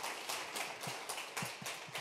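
Audience applause thinning out into scattered individual claps, dying away near the end.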